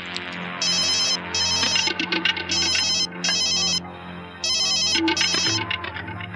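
Telephone ringing with an electronic trilling ring, heard as five short bursts in pairs, over a low sustained music drone.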